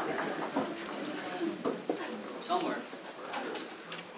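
Quiet murmur of a seated audience in a hall: faint scattered voices with a few small knocks and rustles.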